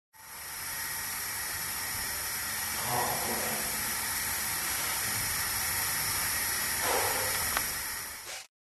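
A man urinating: a steady hissing stream into a toilet that keeps up for about eight seconds and then stops abruptly. Two brief voice-like sounds come through it, about three seconds in and again near the end.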